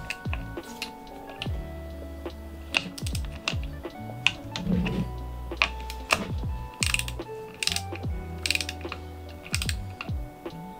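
Background music with a hand ratchet torque wrench clicking in short runs as the terminal nuts on the LiFePO4 cell busbars are tightened to eight newton-metres.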